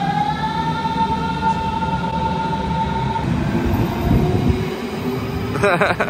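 A Berlin S-Bahn electric train pulls out of an underground station. Its motors make a whine that rises in pitch and levels off about a second in, then fades about three seconds in, leaving the steady rumble of the wheels and cars in the tunnel.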